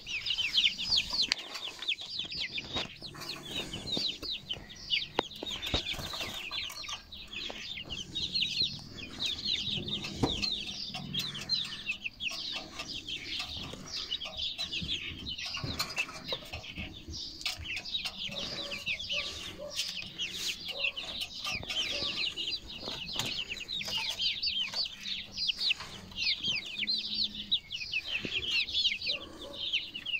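A flock of half-grown chicks peeping: a dense, steady stream of short, high, falling cheeps, with scattered sharp taps among them.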